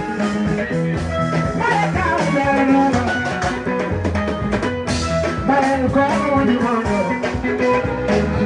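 A live band playing with electric guitar and drum kit, a steady, driving beat running throughout.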